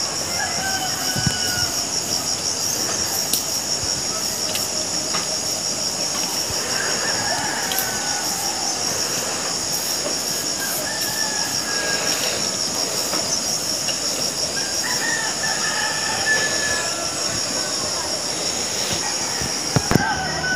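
Steady high-pitched insect chorus with a fast pulsing shimmer, with a few faint short whistles over it now and then.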